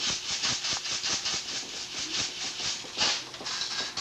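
Airsoft BBs rattling as they are poured and shaken into a clear plastic container, in quick rhythmic bursts of about six a second, with a louder rattle about three seconds in.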